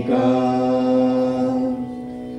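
Sanskrit hymn to Sarasvati being chanted: one long, steady held note that fades away near the end.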